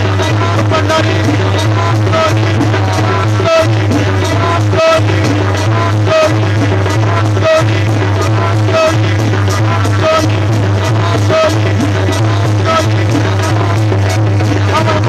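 Live devotional folk music: tabla and an electronic keyboard play a steady rhythmic passage over a constant low drone, with a short melodic figure recurring at an even pace.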